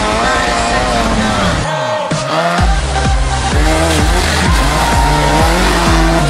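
Fiat Uno Turbo rally car's engine revving hard, its pitch rising and dropping again and again as it is driven round a dirt gymkhana course, with a music track laid over it.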